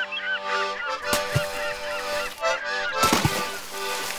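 Accordion music carries on under a flurry of short, quickly gliding high calls, with a brief noisy crash about three seconds in.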